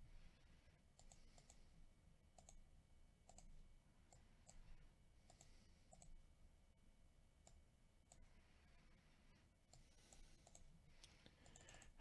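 Near silence with faint, scattered clicks of a computer mouse and keyboard being worked.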